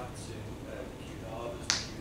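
A man talking at a meeting, picked up by a desk microphone, with one sharp click near the end.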